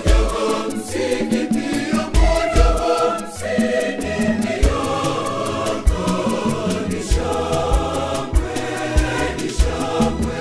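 Mixed choir of women and men singing a Swahili gospel song over a steady beat of bass and percussion.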